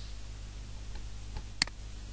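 A single sharp click from the computer being operated about one and a half seconds in, with a fainter one just before it, over a steady low electrical hum.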